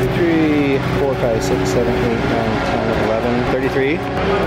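Indistinct voices with no clear words, rising and falling in pitch, over a steady low rumble.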